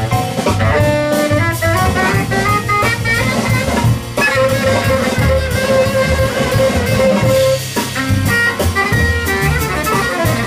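Live jazz quartet: tenor saxophone leading over piano, double bass and drums with cymbals. About four seconds in the saxophone holds one long note for more than three seconds before the lines move on again.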